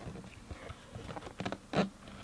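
Cardboard box of a slow cooker being handled and turned in the hands: irregular light scrapes, rubs and taps of fingers on the cardboard, the loudest near the end.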